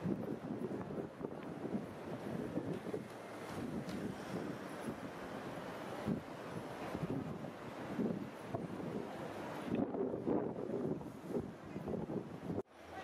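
Wind buffeting the microphone in uneven gusts, over the noise of road traffic.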